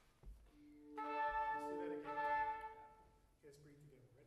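Small wind ensemble playing two sustained chords: the lower parts enter about half a second in, the upper parts join a second in, and the sound breaks off after about three seconds.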